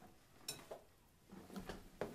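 A light clink of a small metal utensil being set down about half a second in, followed by faint handling and rustling.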